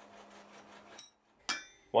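A single hammer blow on hot steel at the anvil about one and a half seconds in, with a short metallic ring after it. Before it, a faint low hum, then a moment of silence.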